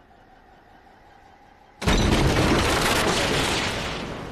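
A sudden loud blast from an action film's soundtrack, starting nearly two seconds in and dying away slowly. Before it there is only a faint held tone.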